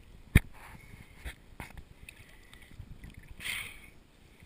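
Choppy bay water lapping and splashing against a camera held at the surface, with one sharp slap about a third of a second in and a hissing splash near the end.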